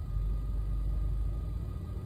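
Low, steady rumble inside a car's cabin, typical of the car's engine idling.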